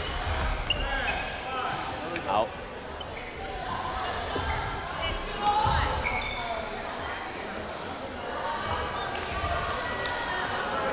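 Busy gymnasium during badminton play: sneakers squeaking on the hardwood court, scattered sharp taps and thuds of play and footfalls, and background voices, all echoing in the large hall.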